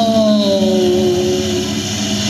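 A voice singing one long held note that sinks a little in pitch and fades near the end, over a steady low drone.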